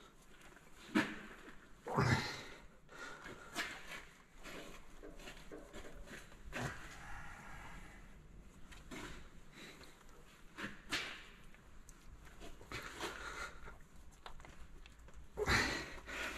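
A diesel unit injector being twisted and pushed by hand into its seat in the cylinder head against the grip of its lubricated seals: quiet scattered clicks, knocks and rubbing of metal parts. A few short, effortful breaths are heard now and then.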